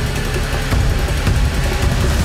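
Tense suspense music with a heavy, deep bass rumble, a TV-show cue for the build-up before a result is revealed.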